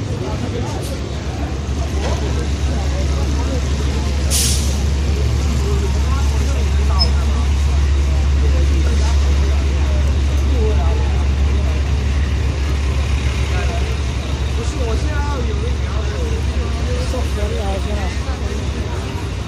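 Busy city street: a steady low rumble of heavy traffic, swelling in the middle and easing toward the end, under the chatter of passing pedestrians. A short hiss cuts through about four seconds in.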